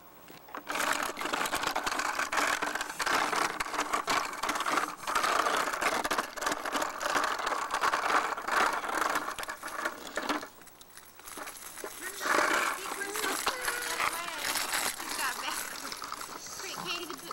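Hard plastic wheels of a toddler's ride-on toy rolling over a rough concrete driveway: a loud, continuous clattering rattle that breaks off about ten seconds in. After a short lull, a similar rolling rattle starts again.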